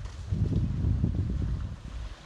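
Wind buffeting the microphone: a gusty low rumble that comes up about a third of a second in and eases just before the end.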